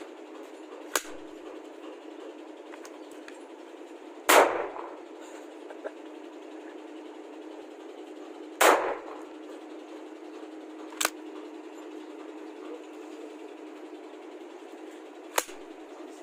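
Two single shots from an M4-style rifle firing film-shooting blank cartridges, about four seconds apart, each with a short echo. Three quieter sharp clicks come before, between and after the shots.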